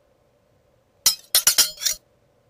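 A quick run of five sharp clinking hits, starting about halfway through and cutting off abruptly.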